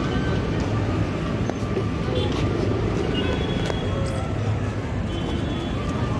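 Busy street ambience: a steady rumble of traffic with indistinct voices around.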